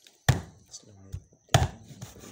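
Kitchen knife chopping down onto a cutting board: two hard strokes about a second and a quarter apart, with a few lighter knocks between them.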